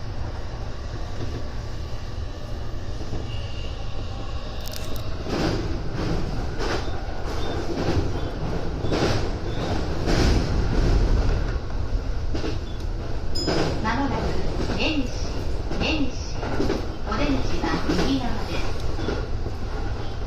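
Keihin-Tohoku Line E233-series electric train running, heard from inside: a steady low rumble, joined from about five seconds in by regular clacks of the wheels over rail joints and points as it nears the station.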